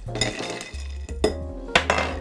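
Ice cubes clinking against a glass as a bar spoon stirs a drink, with a few sharp clinks in the second half, over background music.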